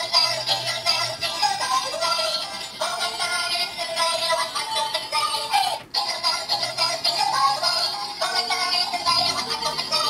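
Motion-sensing snowman toy playing an electronic tune with a synthesized singing voice through its small speaker, thin with little bass, with a brief break about six seconds in.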